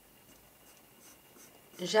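Faint scratching of a Polychromos colored pencil drawing a curved line on paper.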